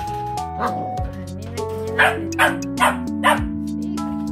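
A young Border Collie puppy barking four short, high yaps in quick succession about two seconds in, over background music.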